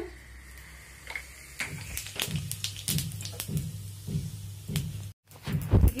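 Cumin seeds crackling in hot oil in an aluminium kadhai: scattered pops, two or three a second, starting about a second and a half in. A low thump comes just before the end.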